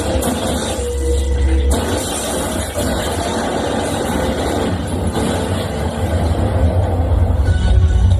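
Film-score music over a heavy, steady low rumble, the texture thickening about two seconds in.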